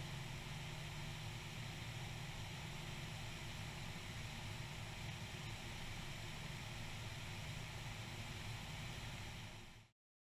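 Faint, steady drone of a light aircraft's engine and rushing air in flight, under an even hiss; it fades out shortly before the end.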